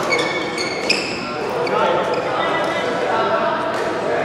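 Court shoes squeaking on a badminton court mat during a doubles rally, with one sharp racket-on-shuttlecock hit about a second in. Voices in the echoing hall follow.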